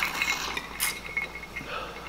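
Ice clinking against the glass of a whiskey tumbler as it is tipped and lowered: a sharp clink at the start and another a little under a second in, with faint glassy ringing between them.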